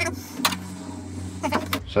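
Several sharp metallic clicks and knocks from hand tools and door parts being handled against a stripped steel car door, over a low steady hum.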